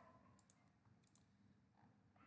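Near silence with faint computer mouse clicks: two quick pairs of clicks, about half a second apart.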